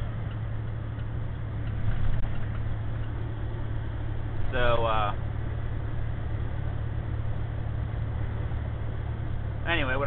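Semi truck's diesel engine running steadily at highway cruise, a low drone with road noise heard from inside the cab. A brief burst of a voice comes about halfway through.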